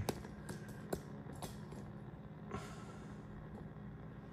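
A few faint sharp clicks in the first second and a half and a short soft rustle a little after halfway, over a low steady hum. These fit the band-selector push-buttons of a Marc Pathfinder NR-52F1 multiband receiver being pressed while it changes to medium wave.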